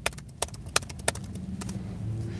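Sharp laptop key or trackpad clicks, about two to three a second, over a low steady hum.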